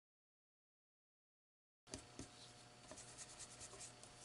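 Total silence at first, then, a little under two seconds in, faint rubbing and a few light taps of a small ink applicator dabbed along the edges of a paper die-cut bird.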